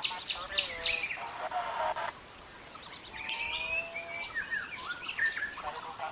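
Birds chirping: a cluster of short, high chirps in the first second or so, then a run of sliding calls from about three seconds in.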